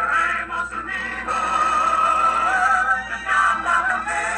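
A song with a singing voice playing from a television, recorded off the TV's speaker; the voice holds long, wavering notes.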